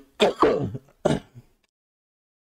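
A man coughing to clear his throat: two short, rough coughs about a second apart, the second shorter than the first.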